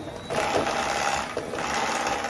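Ninja immersion blender motor starting up a moment in and running at a steady pitch, its blade working cold, unmelted butter and sugar in a glass jar.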